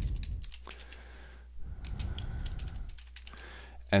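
Typing on a computer keyboard: a quick run of keystrokes, a short break, then a second run.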